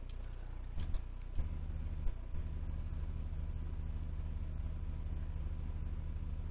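A steady low hum with a few faint clicks in the first two seconds.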